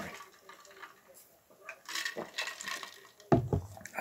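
A man drinking from a plastic water bottle: a few quiet gulps and the water moving in the bottle, then a sudden louder bump near the end.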